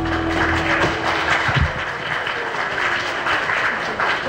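Audience applauding, with the music's final held chord ending about a second in.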